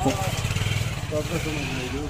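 Motorcycle engine running close by, a steady low pulsing note, with faint voices over it.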